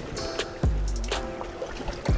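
Background music: sustained chords with light ticking percussion and a deep bass note entering a little past the start.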